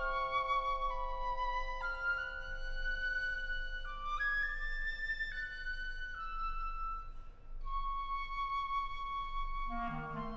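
Piccolo playing a slow, stepwise melody of long held notes over a steady sustained lower note. Just before the end several other wind instruments come in together.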